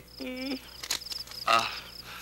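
Crickets chirping steadily in a regular high-pitched pulse, about three chirps a second. A short hummed voice sounds near the start, and a louder, brief breathy vocal sound comes about halfway through.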